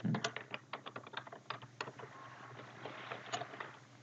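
Computer keyboard typing: a quick, irregular run of keystrokes entering a short two-word name.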